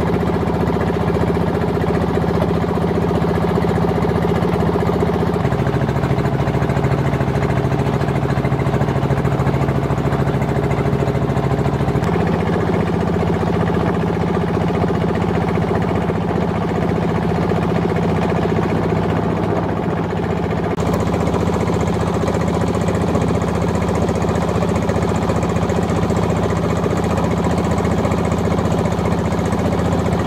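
A small wooden river boat's engine running steadily underway, with a rapid, even chugging.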